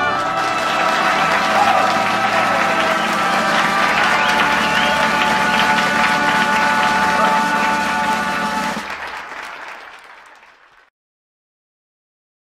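Audience applauding, with voices mixed in, starting just as the brass music ends; the applause fades out about nine seconds in and is gone by about eleven.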